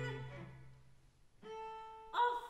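A held sung chord with its accompaniment fades away, and after a short hush a single bowed string note enters about one and a half seconds in and is held steady.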